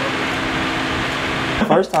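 Steady rushing background noise with a faint low hum that breaks off about one and a half seconds in, followed by a voice speaking.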